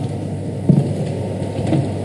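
Steady background room noise with a low hum, broken by one brief short sound a little over half a second in.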